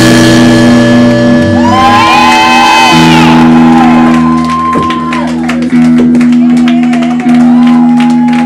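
Live band playing loud, with held guitar chords that change about three seconds in and a vocalist shouting into a microphone.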